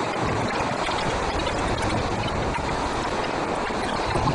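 Steady rushing of the Nayar river flowing below the footbridge, an even noise with no breaks.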